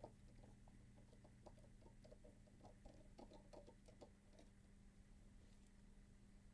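Near silence: faint, scattered light clicks and taps of a precision screwdriver and small screws being worked into a CD drive's metal bracket, over a steady low hum. The clicks stop after about four and a half seconds.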